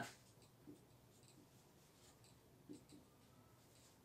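Faint strokes of a marker writing on a whiteboard, a few short scratches about a second in and again near three seconds, against near silence.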